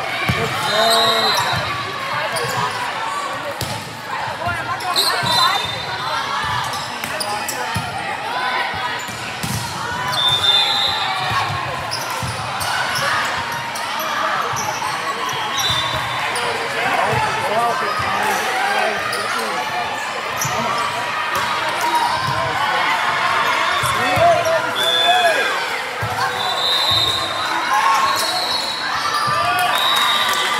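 Indoor volleyball play: the ball being struck and hitting the floor, short high squeaks of sneakers on the court, and a steady background of voices from players and spectators.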